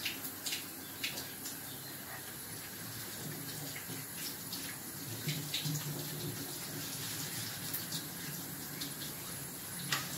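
Kitchen tap running steadily into a stainless steel sink, the stream splashing over hands being rinsed under it, with a few sharp clicks along the way.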